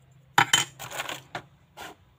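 Hard plastic clacks and rattling from handling a 3D pen kit's plastic parts and packaging tray as a coiled USB cable is lifted out. Two sharp clacks come about half a second in and are the loudest part, followed by scraping and two lighter knocks.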